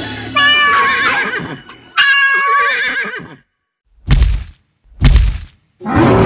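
Cartoon horse whinnying twice, two wavering calls in quick succession, followed after a short pause by two low thuds about a second apart.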